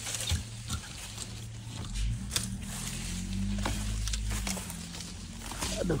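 Apple-tree branches and leaves rustling as an apple is picked, with scattered sharp clicks and snaps over a low rumble on the microphone.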